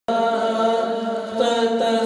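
A male voice singing a naat (Urdu devotional poem in praise of the Prophet) into a microphone in long, drawn-out held notes that waver slightly in pitch, starting abruptly as the recording begins.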